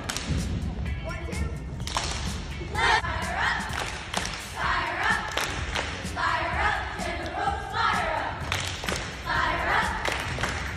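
A group of young girls chanting a cheer in unison in short rhythmic phrases about every second and a half, with claps and stomps throughout.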